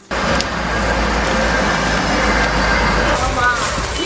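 Loud, steady rushing noise with a deep rumble underneath, cutting in abruptly just after the start; a brief voice is heard near the end.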